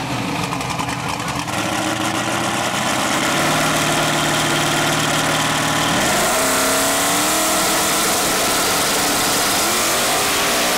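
Two drag-race engines, a Chevy S10 drag truck and a Firebird, running on the starting line; about six seconds in the revs climb and hold at a higher, steady pitch as they are brought up to launch rpm.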